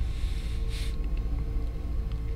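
Low, steady rumbling drone with faint held tones above it: a dark ambient background bed under the horror narration.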